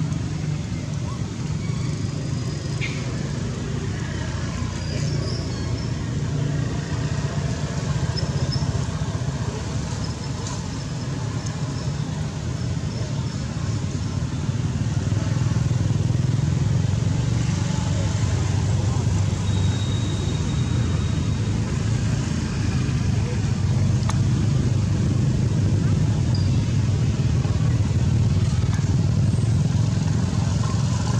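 A steady low engine rumble from a motor vehicle, becoming a little louder about halfway through.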